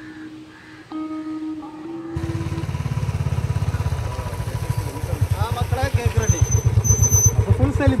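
Music for about two seconds, then a sudden cut to motorcycle engines running close by with a low, even beat as the bikes pull up; people's voices join in about five seconds in.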